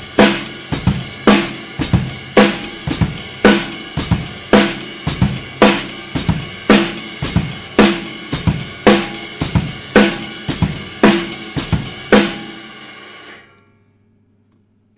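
Acoustic drum kit playing a steady basic beat: ride cymbal strokes over bass drum and snare, with the foot-pedalled hi-hat closing once for every two ride strokes to keep the tempo. The playing stops about twelve seconds in and the cymbals ring out briefly.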